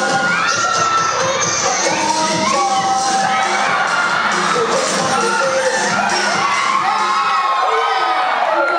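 A crowd of many voices cheering and shouting at once, loud and unbroken.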